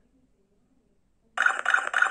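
Arduino-driven small loudspeaker between repeats of its recorded voice alarm: about a second and a half of near silence, then the recorded alarm message starts playing again.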